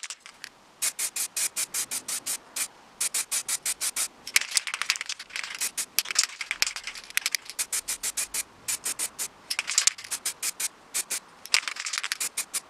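Aerosol spray-paint can hissing in rapid short puffs, about five a second, in several runs with brief pauses between them.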